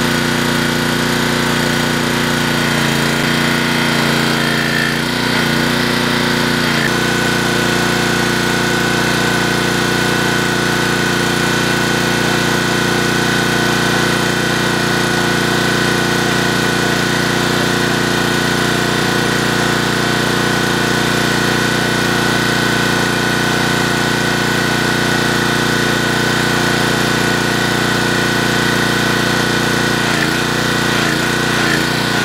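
Small engine running steadily at constant speed, with a steady high whine on top; its note shifts slightly about seven seconds in.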